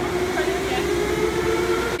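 Steady low electronic tone from an arcade game machine, two close pitches held evenly, with faint voices behind.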